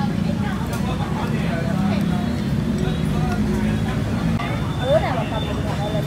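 Steady rumble of street traffic with indistinct voices chattering in the background.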